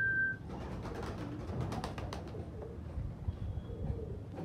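Domestic fancy pigeons cooing, low murmuring coos that come most clearly near the end, with scattered light clicks and taps in between. A steady high tone runs at the very start and cuts off abruptly within the first half second.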